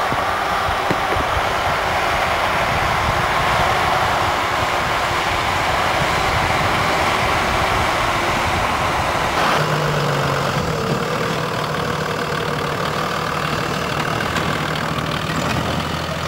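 Off-road 4x4 vehicle engine running steadily under a rushing noise. About nine and a half seconds in the sound changes and a steady low hum comes in.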